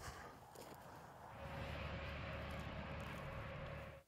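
Steady outdoor background noise that grows louder about a second and a half in, with a faint steady hum, and stops suddenly at the end.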